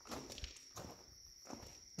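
Faint footsteps on a gravel floor: a few uneven steps.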